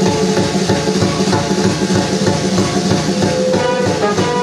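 Live band music: drum kit, electric bass, guitar and keyboard playing an instrumental passage to a steady beat. Trumpet and trombone come in near the end.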